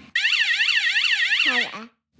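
Electronic warbling siren alarm from the lie-detector rig, a fast up-and-down wailing tone about six times a second. It lasts about a second and a half and then stops.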